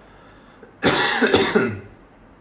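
A man coughs once, a loud, rough burst about a second long that starts nearly a second in.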